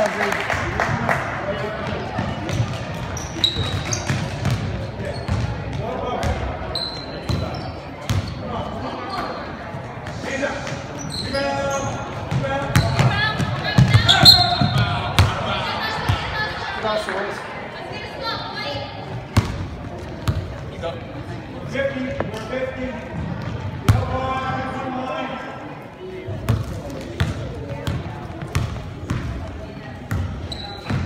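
Basketball game sounds in a gymnasium: a ball bouncing on the hardwood court in many short knocks, with players' and spectators' voices calling out in the hall.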